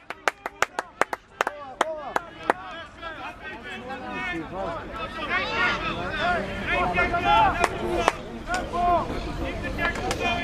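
Quick, sharp hand claps for about the first two and a half seconds, then several voices calling out at once.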